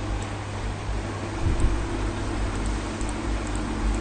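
Steady background hiss with a constant low hum, the room noise of a desk microphone, with a brief low bump about a second and a half in.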